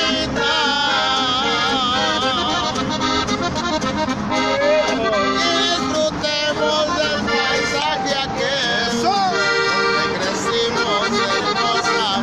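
A norteño song played live on button accordion and acoustic guitar, the accordion carrying quick melodic runs over the strummed guitar, with a man singing.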